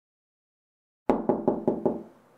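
Knocking on a door: five quick knocks, about five a second, starting about a second in after silence.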